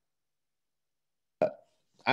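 Dead silence on a video-call line, then near the end one brief, short vocal sound from a man as his microphone opens.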